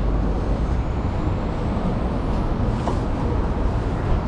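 Steady rumble of road traffic at an airport terminal curb, heaviest in the low end, with a faint rising whine about halfway through.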